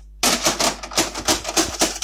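Rapid plastic clattering and clicking as a VHS cassette is pushed into a video recorder's tape slot, starting suddenly just after the start.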